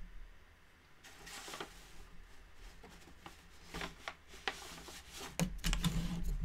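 Faint handling sounds of hand-weaving at a tapestry loom: soft swishes of yarn being drawn through the warp with a bobbin, then a quick run of clicks and knocks near the end.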